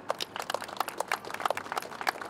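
Scattered applause from a small crowd, a quick irregular patter of hand claps.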